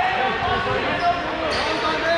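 Dodgeballs bouncing on a hardwood gym floor, under the overlapping chatter of several players' voices echoing in a large hall.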